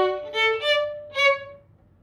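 Violin playing a few short, separated staccato notes that step upward in pitch, like the rising notes of a D major arpeggio. The notes stop about a second and a half in.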